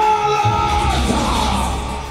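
Loud walkout music played over the venue's sound system, a heavy bass line coming in about half a second in. Over it a voice holds one long high note for about a second and a half.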